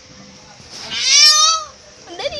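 A baby's single high-pitched squeal, about a second long, rising and then falling in pitch.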